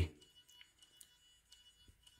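Near silence: quiet room tone with a few faint ticks, after the last word of speech trails off at the start.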